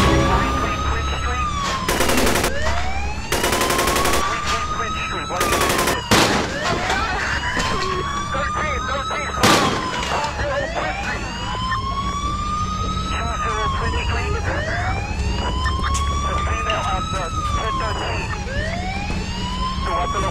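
A police siren wailing up and down in slow cycles of about three seconds each. Over it come bursts of rapid gunfire in the first six seconds and two sharp single shots, at about six and nine and a half seconds.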